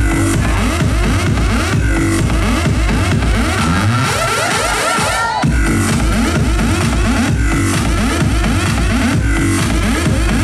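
Loud electronic dance music from a DJ set over a festival sound system, with a pounding bass beat. About four seconds in, the bass thins out under a short rising sweep, then the full beat comes back in about a second later.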